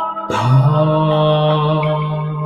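A man's voice chanting one long, steady low tone that begins about a third of a second in, with a brief upward slide in pitch as it starts. Soft ambient music with bell-like tones plays underneath.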